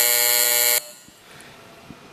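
An electronic buzzer sounds one steady buzzing tone and cuts off sharply under a second in. It is the signal that opens an electronic vote in the legislative chamber.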